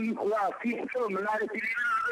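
Speech only: a voice talking.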